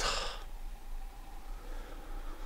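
A man's sigh: a single breathy exhale in the first half second, right after speaking. After it, only a faint steady hum remains.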